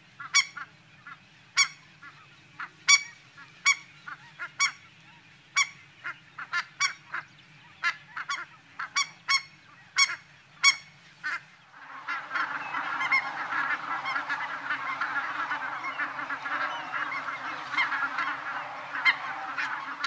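Ross's geese calling: short single calls at irregular intervals for the first half, then, from about twelve seconds in, many birds calling at once in a dense, continuous flock chatter.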